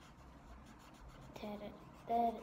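Colored pencil scratching faintly on paper as an area is colored in yellow, with a brief hummed note from the child near the end.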